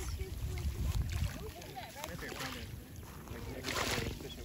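Wind buffeting the microphone, strongest in the first second or so, with faint voices talking in the background and a short rush of noise near the end.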